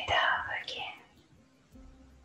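A loud, breathy, whisper-like exhalation by one person, lasting about a second and ending about a second in. Faint, soft instrumental music with held notes plays underneath.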